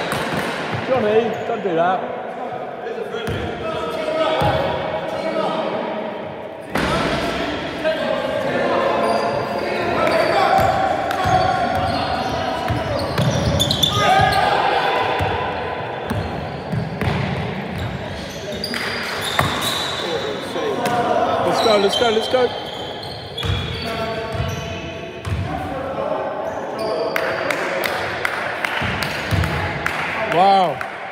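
Basketball bouncing on a sports-hall floor during play, mixed with players' voices and shouts, all echoing in the large hall.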